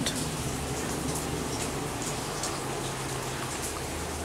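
Steady light rain falling, with faint scattered drips and a low steady hum underneath.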